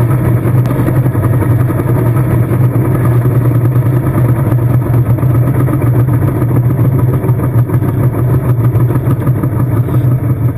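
Diesel engine of a Talus lifeboat launch tractor running steadily, heard close up from on the tractor, with a strong low hum and a rough mechanical rattle over it.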